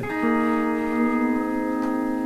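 MSA Millennium pedal steel guitar: a chord is picked just after the start and left ringing, its notes held steady.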